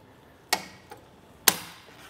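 Two sharp clicks about a second apart, the second louder, with a faint tick between them: the wheel-hoop release on a Kuat Piston Pro X bike rack tray being pushed down to free the bike's wheel.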